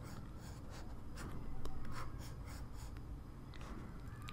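Faint scratching and tapping of a stylus on a drawing tablet, many short strokes in quick succession as small stars are drawn one after another.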